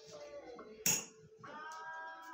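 A singing voice with music, broken a little less than a second in by a single sharp clink of hard objects knocking together.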